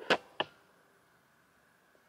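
Two short handling knocks about a third of a second apart as the camera is grabbed and moved; the first is the louder.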